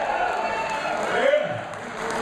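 Indistinct voices of several people talking, with no music playing.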